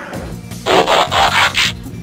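Cartoon sound effect of a folded paper robot assembling itself: a rustling burst about a second long, in several quick pulses, starting about half a second in. Background music plays under it.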